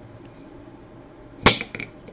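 A kitchen knife cutting through a chocolate truffle candy and striking the ceramic plate beneath it: one sharp click about one and a half seconds in, then two lighter clicks.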